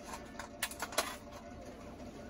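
A few light clicks about half a second to a second in, from a small nut and bolt being fitted by hand, over quiet room tone.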